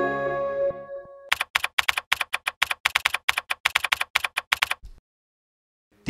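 Intro music fades out. Then comes a quick run of computer-keyboard typing clicks, several a second, which stops abruptly near the end, followed by dead silence.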